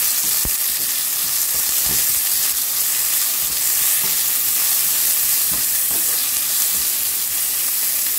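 Chopped onions with dals and dry red chillies sizzling steadily in hot oil in a nonstick pan, stirred with a wooden spatula that knocks lightly on the pan now and then.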